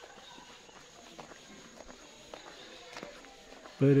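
Faint footsteps of a person walking on a road, a soft irregular step about every half second to second, under quiet outdoor background. A man's voice starts speaking near the end.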